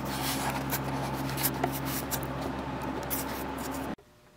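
Steady low electrical hum in a small room, with soft rustling and scattered light clicks of something being handled; it all cuts off abruptly at the end.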